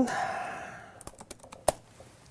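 Computer keyboard keys being typed: a quick run of about seven or eight clicks over less than a second, starting about halfway in, the last one loudest.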